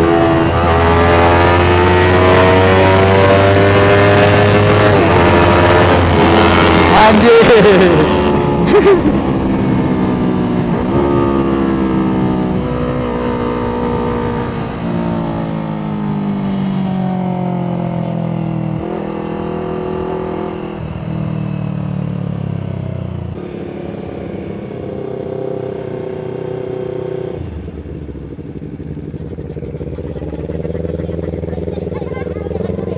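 Yamaha MT25's 250 cc parallel-twin engine under acceleration, its note rising and loud over the first several seconds, then going through a few gear changes and easing off, running lower and quieter as the bike slows toward the end.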